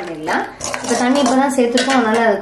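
Steel slotted spoon stirring vegetables in a stainless steel kadai, scraping and clinking against the metal pan several times.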